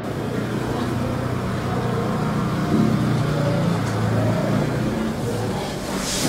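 Low, sustained droning tones whose pitch shifts slowly in steps, typical of a tense dramatic music underscore.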